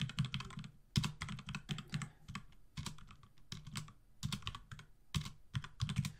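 Typing on a computer keyboard: a run of irregular keystrokes with a few short pauses.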